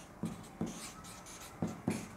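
Felt-tip marker writing on flip-chart paper: several short scratchy strokes with brief pauses between them.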